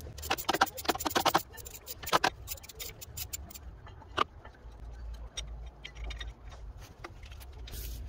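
Ratchet wrench clicking rapidly for about a second and a half as a T27 Torx screw is loosened, then a few single clicks.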